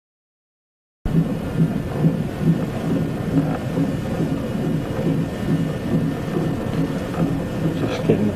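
Fetal heart monitor's loudspeaker playing the unborn baby's heartbeat as a rhythmic whooshing pulse, about two beats a second, which starts suddenly about a second in.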